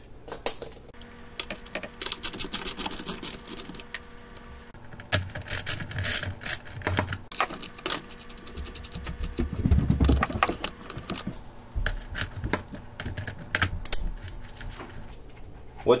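Socket ratchet clicking in quick runs as the screws of a sump pump cover are run in snug, with scattered taps and knocks of the tool and hands on the cover.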